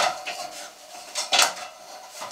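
Thin sheet-metal gas burner cover clanking against a metal ladder as it is slid down. There are two sharp clanks, at the start and about one and a half seconds in, each with a short metallic ring.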